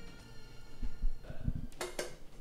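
Background music fading out, then a few low thumps and a sharp click, as of a phone or camera being handled at close range.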